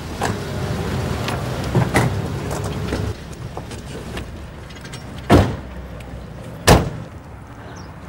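An SUV drives up and comes to a stop, a steady low engine and tyre rumble that drops away about three seconds in. Then two car doors slam shut, a little over a second apart.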